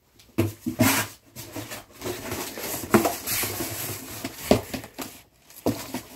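Close handling noise: a cardboard case of snack bags is picked up and moved around right next to the microphone. It gives a string of sharp knocks with rustling in between.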